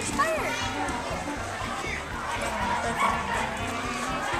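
Children's voices: indistinct chatter among the kids, with a short rising-and-falling exclamation near the start.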